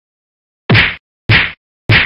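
Three loud whacks, evenly spaced about 0.6 s apart, the first coming just under a second in; each is a short, sharp hit that dies away quickly.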